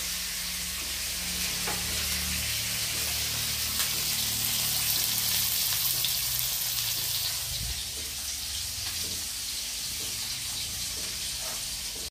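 Fish frying in oil in a pan: a steady sizzle with a few faint pops.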